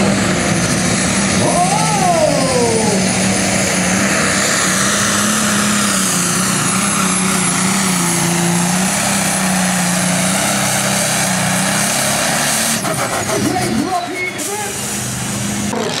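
Turbocharged diesel engine of a Light Super Stock pulling tractor running flat out under load while dragging the sled, a steady high turbo whistle over a deep engine note. The sound breaks off abruptly about three seconds before the end.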